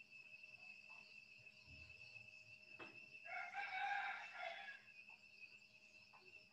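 A faint bird call, once, lasting about a second and a half a little past the middle, over quiet room noise with a thin steady high-pitched tone.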